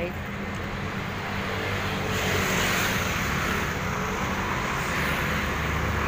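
Street traffic, with motor scooters passing on the road alongside: a steady engine hum under a wash of road noise that grows louder about two seconds in.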